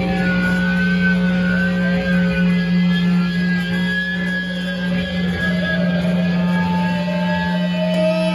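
Live heavy band music: distorted electric guitar holding a low droning note, with a high, wavering feedback tone sustained above it.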